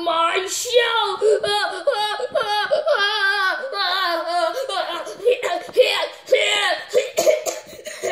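A child's high-pitched voice making wordless sounds with a wavering, warbling pitch, breaking into short choppy bursts in the second half.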